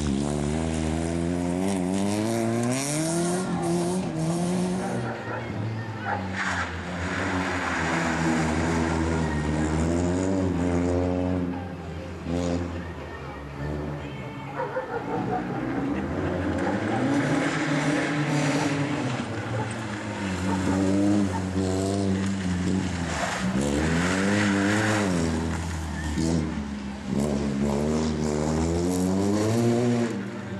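Rally car engine revving hard as the car accelerates through the gears, the pitch climbing and dropping back at each shift several times over, with tyre noise on the loose surface.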